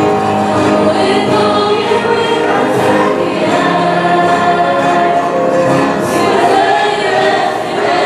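A group of singers, the school's music club, singing a farewell song together.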